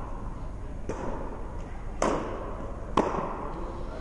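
Tennis ball impacts during a serve: a faint knock about a second in, then the sharp strike of racket on ball about two seconds in and another ball impact about a second later. Each rings briefly in the indoor court hall.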